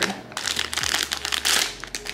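Foil blind-box pouch crinkling as it is handled and pulled open, in two rustling bursts.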